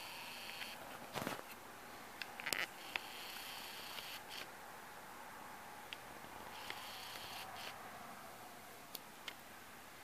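Faint rustles, scrapes and a few sharp clicks as a Maine Coon cat paws and bats at a string on a quilted bedspread, over a steady hiss; the loudest scrapes come about a second in and again at two and a half seconds.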